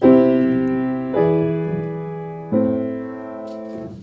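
Piano playing three chords in turn, C major, E7 and A minor, each struck once and left to ring and fade. The E7 is the dominant seventh of A minor, so the final A minor chord sounds resolved and final, like a perfect cadence.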